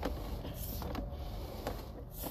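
Sewer inspection camera push cable being pulled back onto its reel: a steady mechanical rattle and hiss with a few light ticks.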